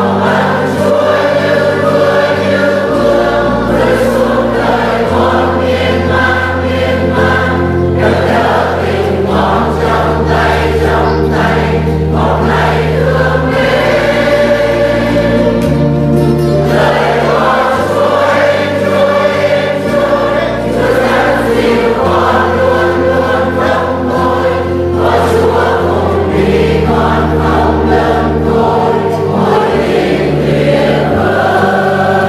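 A choir singing a Christian hymn over an instrumental accompaniment, its held bass notes changing every second or two.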